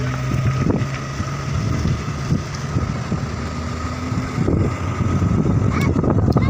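Engine and road noise of a moving vehicle heard through an open window, with wind buffeting the microphone. A steady low engine hum gives way to a rougher rumble about a second and a half in.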